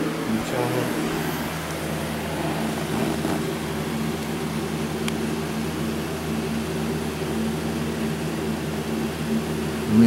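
Propane space heater running with a steady hum and a low rushing sound. A single faint click comes about halfway through.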